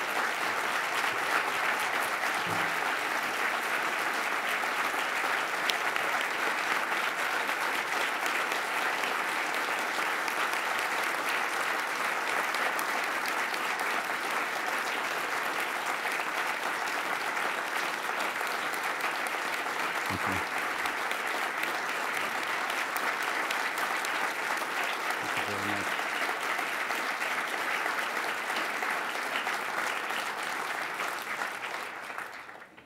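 Large audience applauding steadily in a standing ovation.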